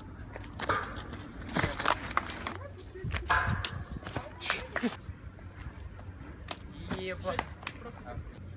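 Short voice calls and exclamations from a group of young men, mixed with scuffing footsteps and the run-up, take-off and landing of a flip off a railing onto grass a little past the middle.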